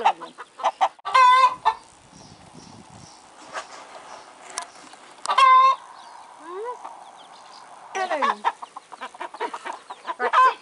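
Farmyard poultry calling: two loud, drawn-out squawks, one about a second in and another about five and a half seconds in, with a quick run of clucking or gobbling notes near the end.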